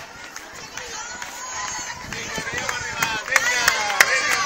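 Spectators' voices calling out along the street, louder in the last second, over the runner's own footsteps and the handheld phone being jostled with each stride.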